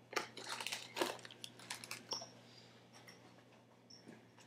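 Paper and plastic packaging crinkling and tearing as a small boxed miniature set is unwrapped by hand, a quick run of crackles in the first two seconds that then thins out.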